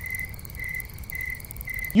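Cricket-chirping sound effect, a steady high chirp repeating about twice a second: the classic gag for an awkward silence after a lame line.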